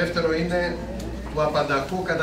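A man's voice speaking; the words are not made out.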